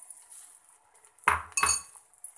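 Two quick clinks of a kitchen utensil against a dish, about a third of a second apart, the second ringing briefly.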